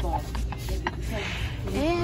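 Short knocks and clacks from baseball bats being handled and pulled from a store display rack, over a steady low room rumble, with a brief voice sound near the end.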